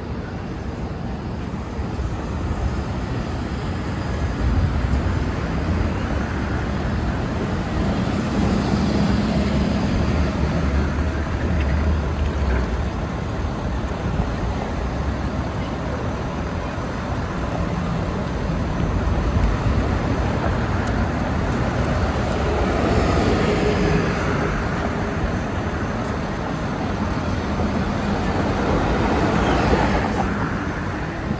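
City street traffic: cars, taxis and a box truck driving past a crosswalk, a steady mix of engine rumble and tyre noise. It swells louder as vehicles pass close, about a third of the way in and again past two-thirds.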